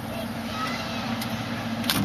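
Fire engine's cab door swung shut, closing with a single sharp latch thud near the end, over a steady low engine hum.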